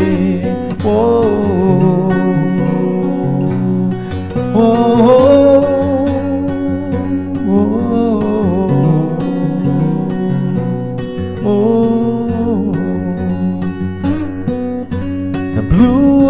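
Steel-string acoustic guitar fingerpicked in DADGAD tuning with a capo at the fourth fret, playing an instrumental passage of ringing, sustained notes. A wavering, held melody line rises over it several times.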